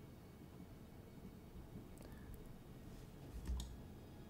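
A few faint clicks from a computer mouse and keyboard over quiet room tone: a couple of clicks about two seconds in, then a soft thump and more clicks near the end.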